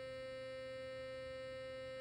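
Burst sonic electric toothbrush running steadily out of the mouth, standing upright on a stone countertop: a constant high-pitched buzz partway through its two-minute timed cycle.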